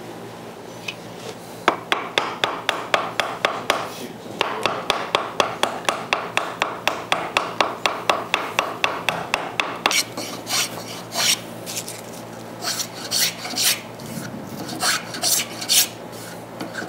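Hand tools cutting an arch into a wooden board: a run of quick, evenly spaced strokes, among them a mallet tapping a chisel, then from about ten seconds in a series of short spokeshave cuts shaving the curve smooth.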